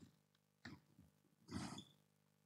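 Faint sound of chalk writing on a blackboard: a couple of short taps, then a longer scratching stroke about one and a half seconds in.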